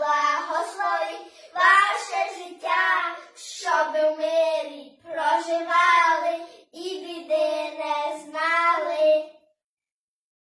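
Two children singing a Ukrainian Christmas carol (koliadka), the last note held and stopping about nine and a half seconds in.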